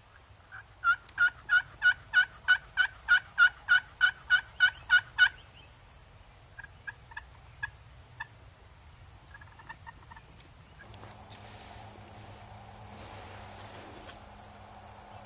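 A long, even series of about fifteen loud turkey yelps, about three a second, then a few scattered single clucks and a short, quick run of softer notes. Rustling noise starts near the end.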